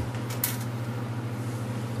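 One brief light click about half a second in, from a small part being handled on the engine case. A steady low hum runs underneath.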